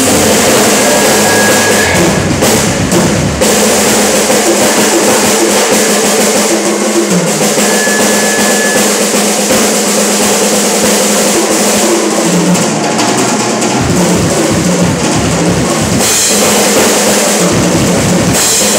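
Live rock band playing an instrumental passage with no vocals: drum kit to the fore, with electric bass and electric guitar. The deepest low end drops away for several seconds in the middle, then returns near the end.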